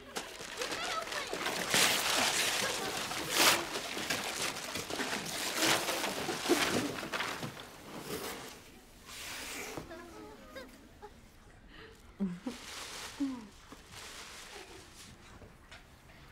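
Gift wrapping paper being ripped and torn off a box by hand, a run of noisy rips and rustles that is loudest over the first several seconds, then quieter rustling and handling of the cardboard box.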